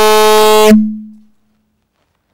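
Loud, steady electrical buzz through the hall's PA loudspeakers, one held pitch with many overtones. It cuts off abruptly under a second in and dies away quickly, a sound-system fault that is fixed moments later.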